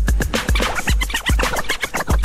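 Vinyl scratching on a DJ turntable, short choppy cuts over a driving beat with a kick drum about two and a half times a second.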